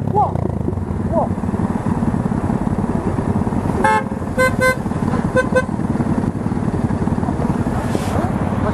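Motorcycle running in traffic with heavy wind noise on a helmet camera, and a vehicle horn sounding about four seconds in: one short blast, then two quick pairs of beeps.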